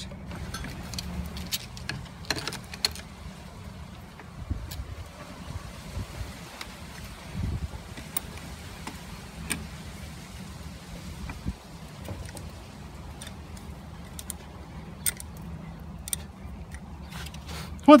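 Metal hand tools, a chisel and wrenches, clinking and knocking against a water pressure regulator's body as its bolt is held and unscrewed: scattered irregular clicks over a steady low rumble.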